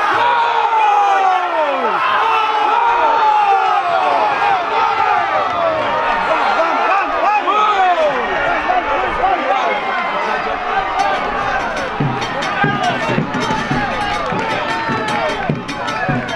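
Crowd of football supporters cheering and shouting after a goal, many voices at once. In the last few seconds a run of sharp rhythmic beats joins the shouting.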